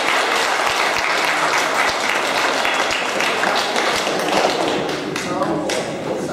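A congregation applauding: many hands clapping steadily, thinning out about five seconds in as voices come back.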